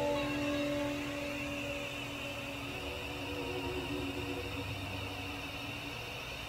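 The final guitar chord of a psychedelic rock song ringing out and fading away over the first couple of seconds, leaving a steady hiss that sweeps slowly up and down as the track ends.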